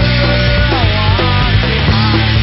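Pop punk band playing live: a sung vocal line gliding over bass guitar, electric guitar and drums keeping a steady beat.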